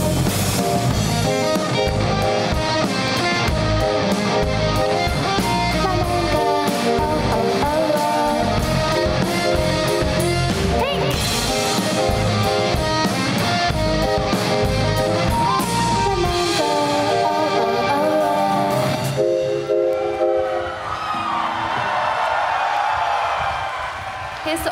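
Live indie-pop band of electric guitars, drum kit and keyboards playing the last section of a song with a steady beat; about three-quarters of the way through the drums stop and the final chords ring out, followed by crowd cheering.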